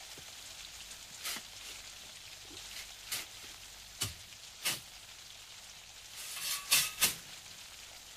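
A spade digging into soft, muddy ground: about six sharp scraping stabs, a second or two apart, with two close together near the end, over a steady hiss.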